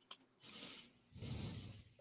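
Faint breath noise near the microphone: a short breath about half a second in, then a longer, fuller exhale.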